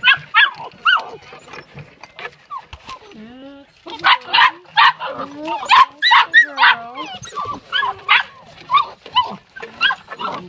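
A litter of puppies yipping and whining with many short, high calls. The calls come thickest from about four seconds in.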